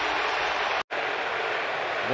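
Stadium crowd cheering a strikeout. The noise is broken by a brief dead-silent gap just under a second in, then steady crowd noise carries on.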